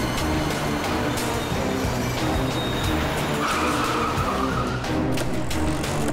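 Dramatic background score with a steady, repeating rhythmic pulse, and a high, screech-like tone held for about a second from three and a half seconds in.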